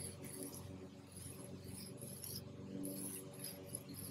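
Sidewalk chalk scraping on an asphalt driveway as it is drawn round in big circles: faint, irregular rasping strokes over a low steady hum.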